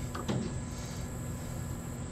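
Steady low background noise with no distinct mechanical event, and a brief faint voice near the start.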